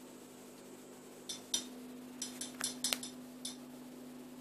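Feeding tongs clicking: about nine light, sharp clicks and clinks in a burst starting about a second in, over a steady low hum.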